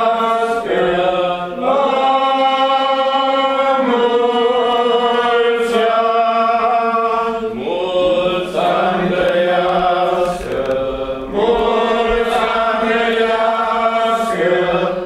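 A church congregation sings an Orthodox chant together, slow phrases of long held notes with brief breaths between them.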